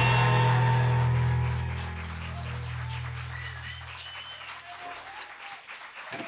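A rock band's last chord, on electric guitars and bass, ringing out and fading away over about five seconds, with a small group clapping as it dies.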